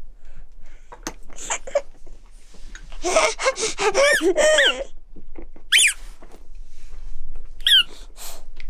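A baby squealing with delight: a run of excited high-pitched shrieks a few seconds in, then two short, sharp squeals near the end.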